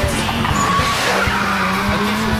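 Fast dance music with a steady beat, mixed with a racing car's engine and squealing tyres.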